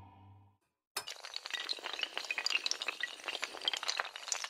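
Animated-intro sound effect. A held music chord fades out, then after a short silence a sudden crash about a second in opens a dense, continuous run of small hard clinks and clicks, like many tiles or shards clattering.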